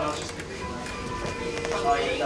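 Background music with steady held tones, and a man's brief laugh and "oh, no" at the start.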